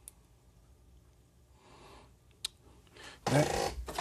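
Two small sharp clicks of the buck converter's push-button mode switch, one at the very start and one about two and a half seconds in, over quiet room tone. A man's voice starts up near the end.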